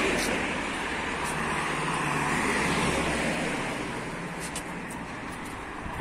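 Road traffic: cars driving past on the street, a rushing tyre noise that swells in the middle with a low engine hum, then fades near the end.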